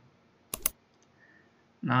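A single computer mouse click, heard as a quick double tick of press and release about half a second in.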